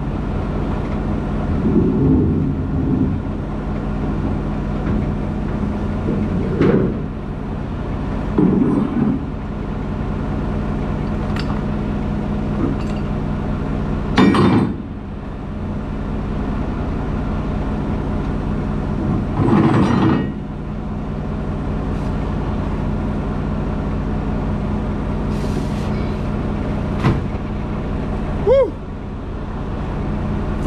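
Diesel engine of a semi truck idling steadily, broken by several brief louder noises a few seconds apart.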